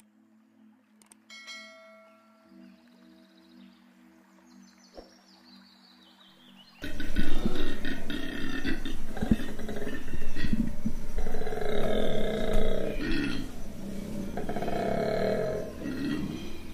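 Faint musical tones and a short chime, then from about seven seconds in a koala bellowing loudly in a run of repeated phrases, each one to two seconds long.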